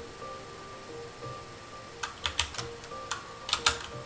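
Typing on a computer keyboard: a quiet first half, then a quick run of keystrokes about halfway in and another short run near the end, over a faint steady tone.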